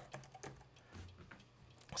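Faint keystrokes on a computer keyboard, a quick run of separate key clicks as a word is typed.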